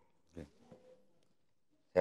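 Faint, off-microphone voice of a woman in the audience, with one short vocal sound about half a second in, then quiet. A man's loud, amplified voice starts right at the end.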